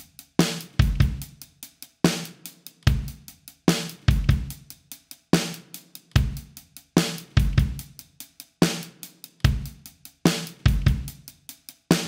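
Drum kit playing a steady beat on its own: kick drum, snare and hi-hat in a repeating groove, the intro of the song before the rest of the band comes in.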